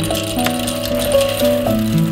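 Background music with a plucked, stepping melody, over the rattle of whole coffee beans poured from a bag into a Krups electric blade coffee grinder's metal bowl.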